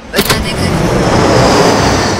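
Airliner cabin noise: a loud, steady rushing roar that starts abruptly a moment in, with a faint falling whistle above it.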